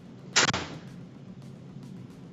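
A single sharp knock about a third of a second in, dying away quickly, over a steady low hum.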